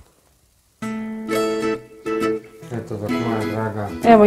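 Guitar music with a voice over it starts abruptly about a second in, played through a small Bluetooth subwoofer-and-satellite speaker set; it is an advertisement's audio.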